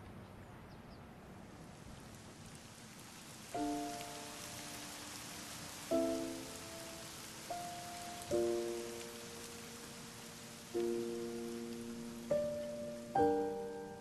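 Steady rain hiss, joined about three and a half seconds in by slow, soft piano music: single struck chords, each ringing and fading before the next.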